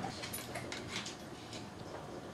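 Metal spoon clicking and scraping against a small tin can as someone eats from it, a few short clicks in the first second.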